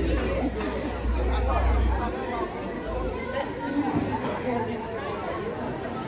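Crowd chatter: many overlapping conversations in a full banquet hall, no single voice clear. A low rumble sits under it for the first two seconds.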